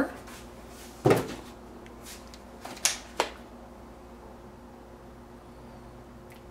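A sharp knock about a second in, then two lighter knocks close together near three seconds: household objects being handled as a plastic water bottle is picked up. A faint steady room hum follows.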